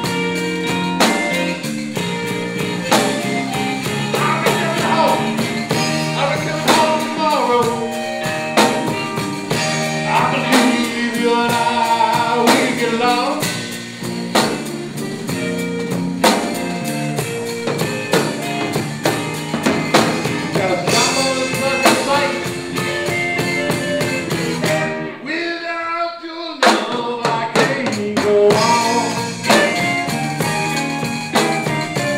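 A live zydeco band playing, with drum kit, electric guitar and bass under a man singing. Near the end the drums and bass drop out for about a second, then the band comes back in.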